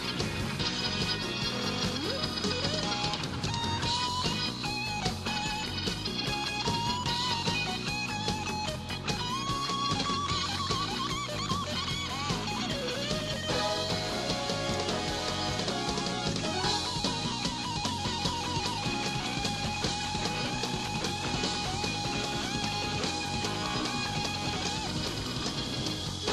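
Live rock band playing: an electric guitar lead with bent, sliding notes over drum kit and bass.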